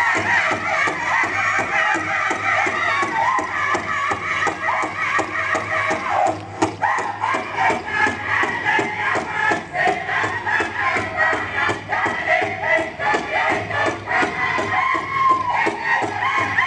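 Native American dance song: a drum beaten steadily at about four beats a second, with voices chanting over it.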